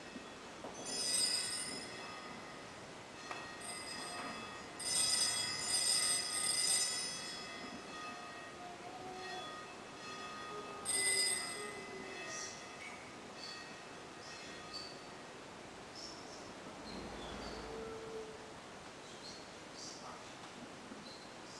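Small altar bells ringing in three bursts of bright, high ringing: a short ring about a second in, a longer one from about five to seven seconds, and another short ring about eleven seconds in.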